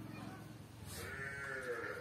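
A goat bleating once in the background: one drawn-out call of about a second, in the second half.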